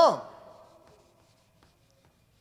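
A man's spoken word trailing off with room echo, then faint, short ticks of a marker on a whiteboard.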